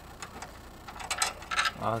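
A few short, sharp clicks and taps of hand tools working on an air-conditioning condenser's fan and motor assembly during disassembly, then a man's voice near the end.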